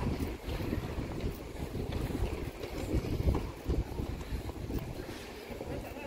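Wind buffeting the microphone, an uneven low rumble that swells and dips in gusts.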